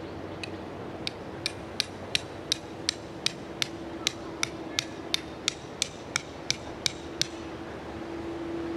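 A hammer driving a tent stake into the ground: a steady series of about eighteen sharp strikes, roughly three a second, ending about seven seconds in.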